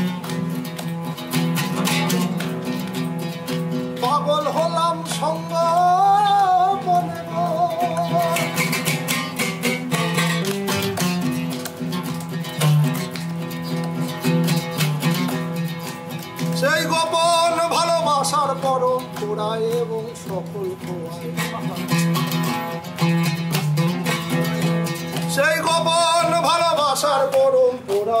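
A man singing a Bengali folk-fusion song over plucked oud accompaniment. The voice comes in three long, wavering, ornamented phrases, around four, seventeen and twenty-five seconds in, while the oud keeps up steady low plucked notes.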